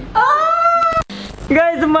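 A single high-pitched, drawn-out call that slides up and then holds for almost a second. It is cut off abruptly by a click, and speech follows.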